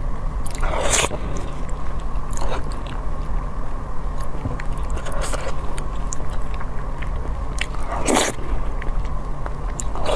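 Close-miked eating of saucy food: wet bites and chewing, with small clicks throughout. Louder bites come about a second in, twice around the middle, and again near eight seconds.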